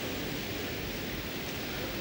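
Steady, even background hiss with no distinct event: the room tone of the lecture space.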